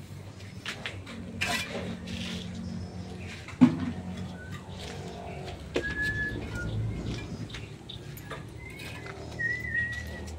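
A single sharp knock about three and a half seconds in, over a steady low hum, with a few short high whistled calls near the end.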